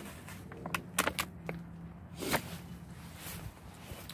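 Rabbit manure emptied from buckets into a plastic feed bag: irregular rustles of the bag and sharp knocks of the bucket, the loudest a little over two seconds in.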